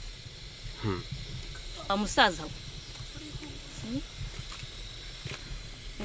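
A few short vocal utterances, brief words or exclamations, about one and two seconds in and again faintly near four seconds, the one at two seconds the loudest with a falling pitch, over a steady faint hiss of background noise.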